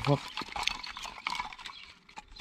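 Dry split kindling sticks knocking and clicking against each other as they are handled and shifted in a pile by hand, a few light scattered knocks.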